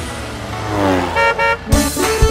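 Cartoon sound effects: a falling tone over a low rumble, then two short toots of a cartoon bus horn, with music starting again near the end.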